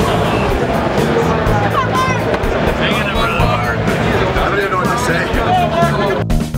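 Loud background music with a steady beat under the chatter and calls of a crowd of many voices.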